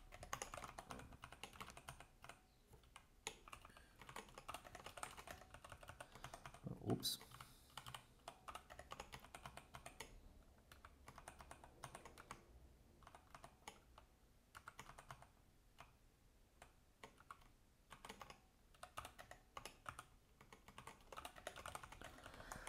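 Computer keyboard typing: quick, irregular runs of keystrokes with short pauses, fairly faint. A short vocal sound about seven seconds in.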